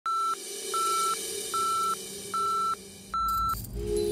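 Five short electronic beeps at one steady pitch, about 0.8 s apart, over a faint steady drone. A brief swish near the end leads into chiming music.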